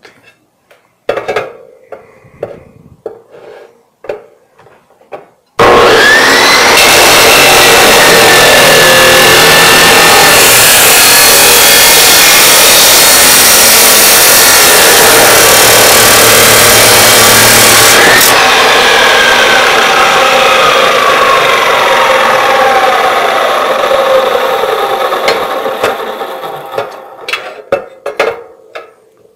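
DeWalt abrasive chop saw switched on about five and a half seconds in, its cut-off wheel grinding through a steel square tube for about twelve seconds. At about eighteen seconds the switch is released and the motor whine falls steadily in pitch as the wheel coasts to a stop. Before the start there are a few light knocks as the tube is set against the stop.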